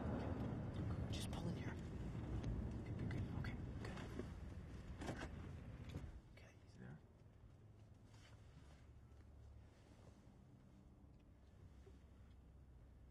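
Low rumble of a moving car's cabin as the car slows into a parking lot, falling away sharply about six seconds in to a faint steady hum.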